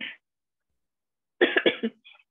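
A person coughing: a brief sound at the very start, then a quick run of about three coughs about one and a half seconds in.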